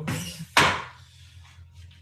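Paper rustling as sheets are handled, with one sharp thump about half a second in.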